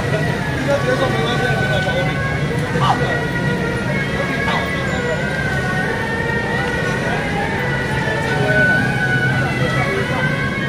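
Street procession noise: people talking over the steady hum of a slow-moving vehicle, with long, wavering high tones held in the background.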